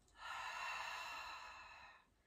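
A woman's long, slow audible exhale, a breathy hiss that starts a moment in and fades away over about a second and a half. She is breathing out to draw the ribs down and brace the abdominals.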